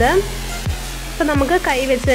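Background music with a steady beat of deep bass hits, about three every two seconds, under a gliding melody.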